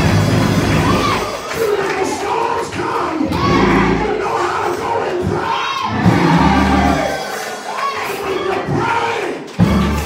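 Church congregation shouting and cheering in praise, with a voice shouting over the microphone and instrumental music underneath: held low chords that come and go every few seconds.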